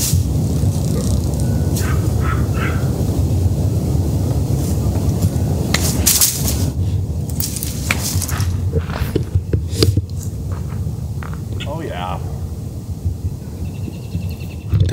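Wind rumbling on the microphone, with a few sharp knocks about six and ten seconds in.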